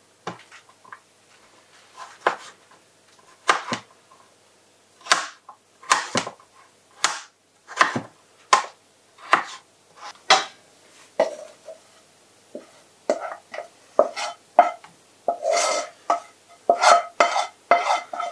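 Kitchen knife chopping butternut squash on a chopping board: sharp, irregular knocks about one a second. In the last few seconds, denser clatter of a metal frying pan against a steel mixing bowl, with a ringing tone.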